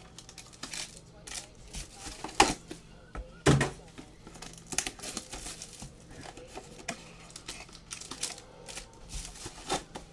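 Trading-card box and foil packs being handled on a table: rustling, crinkling and small clicks, with two sharper knocks about two and a half and three and a half seconds in, the second a low thump as something is set down.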